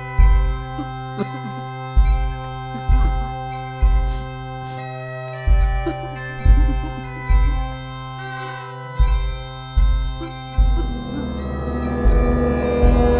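Bagpipes playing a marching tune over their steady drones, with a bass drum struck roughly once a second; the drum beats stop shortly before the end while the pipes keep sounding.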